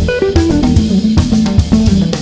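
Electric guitar played through a 1960 EkoSuper valve combo amplifier, an AC30-type amp, with a drum kit. The guitar plays a run of single notes stepping downward, then settles on lower notes.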